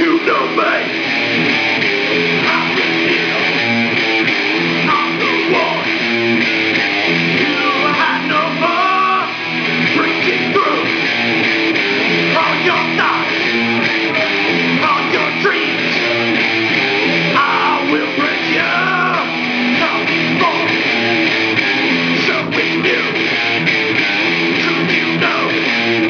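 Electric guitar strummed through an amplifier, playing a song steadily, with a man's voice singing over it at intervals.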